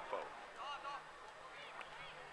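Faint, distant shouts of players' voices across a football pitch: a few short calls about half a second to a second in.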